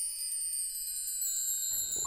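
Shimmering, wind-chime-like sparkle sound effect: a cluster of high, sustained tones gliding slowly downward in pitch, with a lower layer that cuts off near the end.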